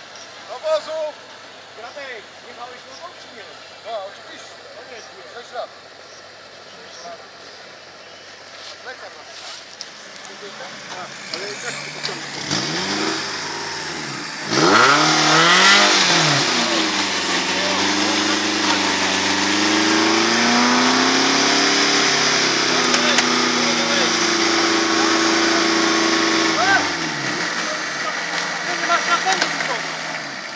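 Off-road buggy's engine revving hard in deep mud, its pitch rising and falling over and over for about twelve seconds, before it drops back to a lower level near the end. Quieter engine noise and scattered voices come first.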